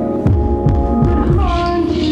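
Electronic music: sustained synth tones over a low, throbbing pulse that repeats about two to three times a second. About three quarters of the way in, a couple of higher tones glide briefly downward.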